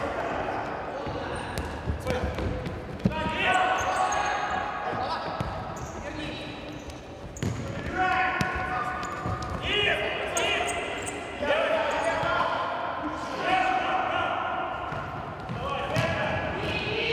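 Futsal players shouting and calling to each other, echoing in a large sports hall, with several sharp thuds of the ball being kicked and bouncing on the court.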